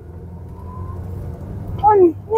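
Jetour X70 crossover's engine heard from inside the cabin under a suddenly floored throttle, a low rumble that grows steadily louder as the car accelerates: a kickdown test of its 8-speed automatic.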